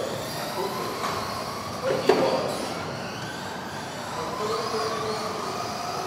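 Electric 1:10 RC buggies racing on a carpet track, their motors whining and the pitch rising and falling as the cars throttle up and slow for corners. There is a sharp knock about two seconds in.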